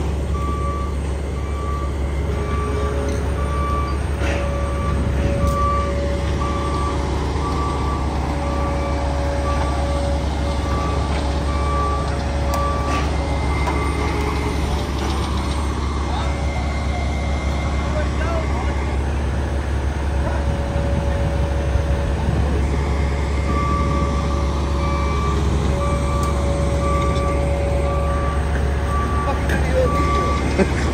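Diesel engine of a tracked drilling rig running steadily while it travels under remote control, with its travel alarm beeping at an even pace. The beeping stops about twelve seconds in and starts again about ten seconds later.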